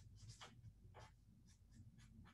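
Faint scratching of a pen on paper as short lines are drawn, about four brief strokes.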